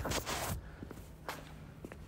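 A few soft footsteps on a rubber gym floor, with light rustle from the phone being handled.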